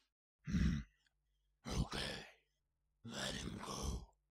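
A man's breathing, three deep breaths in a row, the first short and the last two longer and sigh-like.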